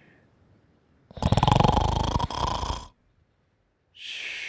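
A sleeping cartoon character's snore: one loud, rattling snore drawn in, starting about a second in and lasting nearly two seconds, after the tail of a fading breath out at the start.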